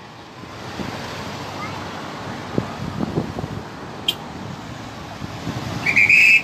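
Vehicles driving slowly past close by in heavy traffic, a steady rush of engines and tyres, with wind on the microphone. There is a brief sharp click about four seconds in.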